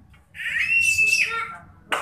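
A child's high-pitched squeal, held for about a second, followed by a sharp click near the end.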